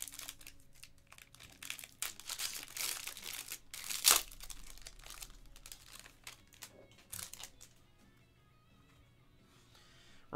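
Foil wrapper of a trading-card pack being torn open and crinkled in the hands, with one sharp, loud crackle about four seconds in. The crinkling fades out for the last two seconds.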